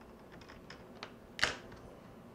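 Plastic snap clips of a Toshiba laptop's screen bezel clicking as the bezel is pried loose by hand: a few light clicks, then one louder snap about one and a half seconds in.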